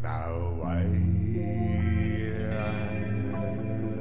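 Electric guitar music with a looped backing: sustained, droning chords over a steady low note, with a sweep that falls and rises in tone in the first second.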